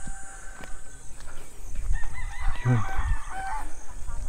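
A rooster crowing once, a drawn-out wavering call starting about halfway through.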